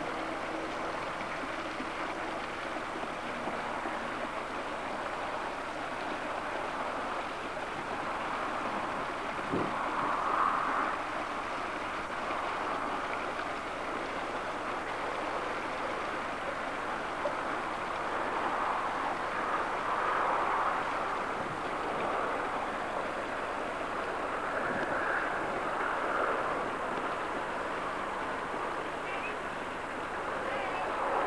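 A steady rushing noise that swells briefly a few times.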